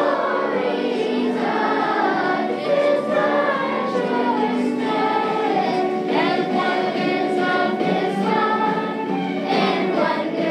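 Children's choir singing together.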